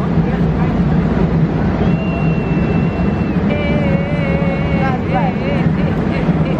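Loud, busy street noise: a steady traffic rumble under crowd voices. A high steady tone sounds for about a second starting about two seconds in, and a lower held tone with overtones follows for over a second. Wavering shouted voices come near the end.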